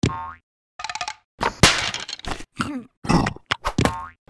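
Cartoon sound effects: a springy boing right at the start, then a quick run of short comic noises and squeaky character vocalizations.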